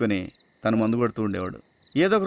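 Crickets chirping, a steady pulsing high trill, under a man's voice talking, which is the loudest sound.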